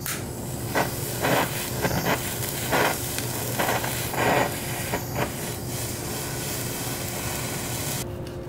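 Hand-held butane kitchen torch hissing steadily as its flame sears the surface of a cooked steak, with several brief louder spurts in the first five seconds.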